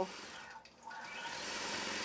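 Gammill Statler Stitcher longarm quilting machine stitching through a quilt, a steady whirring hum. It dips briefly just under a second in, then builds again.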